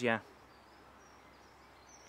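A brief spoken 'yeah', then near silence with faint outdoor background hiss.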